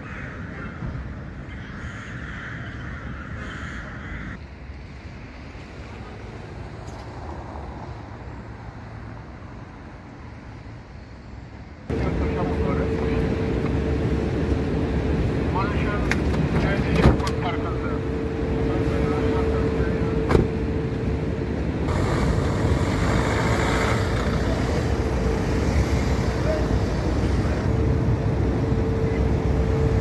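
Quiet outdoor ambience with crows cawing for the first few seconds; then, about twelve seconds in, a jump to louder street noise with a small van's engine running, two sharp knocks like a car door shutting, and voices.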